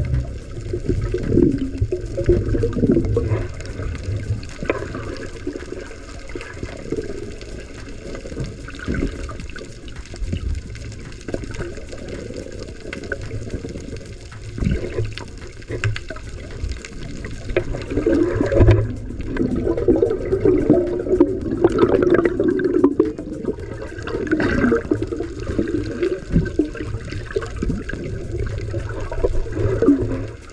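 Muffled underwater sea noise picked up by a submerged camera: an uneven rushing, gurgling wash of moving water with scattered small clicks, swelling louder for several seconds past the middle.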